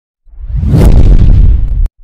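Countdown-leader sound effect: a loud whoosh with a deep rumble that swells in over about half a second, holds, then cuts off abruptly with a click near the end.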